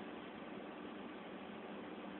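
Steady faint hiss of room tone and microphone noise, with no distinct sound events.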